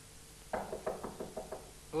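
Knuckles knocking on a door: a quick run of about eight raps, about half a second in.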